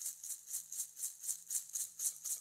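Recorded music: a shaker playing alone in a steady rhythm of quick strokes, about six a second.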